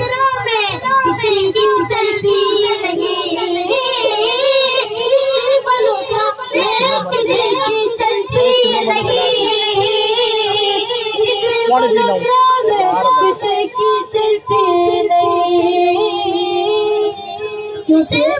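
A young naat reciter singing a naat unaccompanied into a microphone over the PA: a high, boyish voice holding long notes with wavering ornaments and melodic runs.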